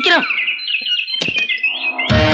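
Electronic comic sound effect in a film soundtrack: a rapid run of short, high chirps repeating several times a second, with a falling swoop near the start and a few clicks.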